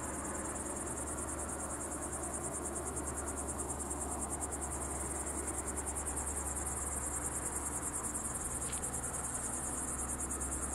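Crickets chirring in the grass: a continuous high-pitched trill made of very rapid pulses, with a low steady hum beneath it.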